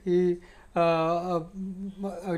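A man's voice humming a few short held notes at a steady pitch, the longest in the middle, with brief pauses between them.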